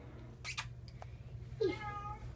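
A Siamese cat giving a short meow near the end, after a brief scuffing noise about half a second in as she rubs against the camera.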